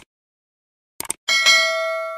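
Subscribe-button sound effect: two short mouse clicks about a second apart, then a bell ding that rings with several clear tones and slowly fades.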